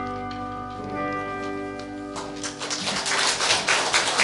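A choir holding and releasing its final chord, the sung notes fading, then audience applause breaking out a little over two seconds in and growing louder.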